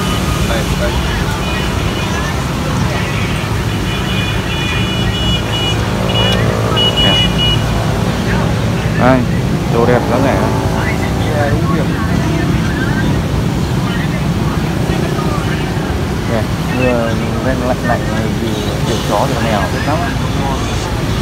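Outdoor street noise: a steady low rumble of motorbike and road traffic on a wet street, with people talking in the background. A few seconds in, a high steady tone sounds briefly and stops.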